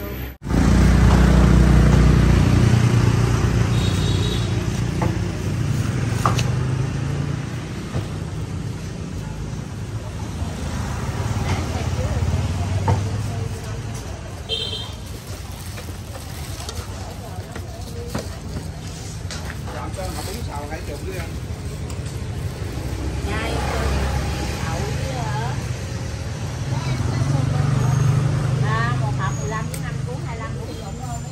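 Roadside traffic: vehicle engines running close by, swelling and fading as they pass, with people talking in the background.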